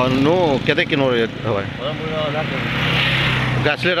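Motorcycle passing on the road: a steady engine hum whose noise swells about three seconds in and drops off just before the end, with a man's voice over the first second.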